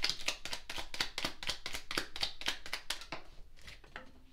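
A deck of tarot cards being shuffled by hand: a quick run of crisp card clicks, several a second, that stops shortly before the end.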